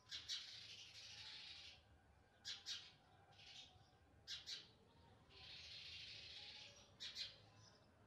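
Faint short chirps from a house sparrow fledgling, mostly in pairs about two seconds apart, with two longer hissing sounds of about a second and a half between them.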